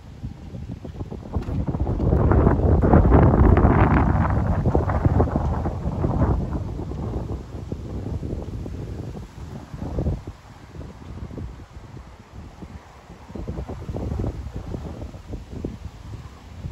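Wind buffeting the microphone, a rough rumbling rush. It swells into a strong gust about two seconds in that eases off by about six seconds, followed by lighter gusts.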